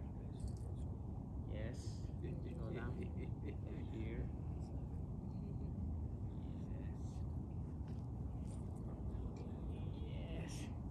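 A steady low outdoor background rumble, with faint, murmured voices about two to four seconds in and again near the end.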